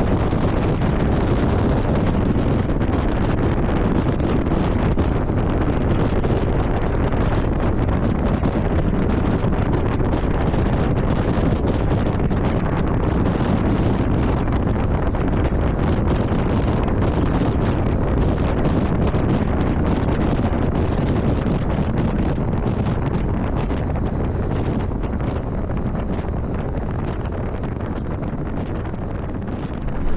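Steady wind rushing over the microphone of a Yamaha V Star 1300 motorcycle riding at road speed, with the bike's running mixed into the low rumble. It eases a little near the end.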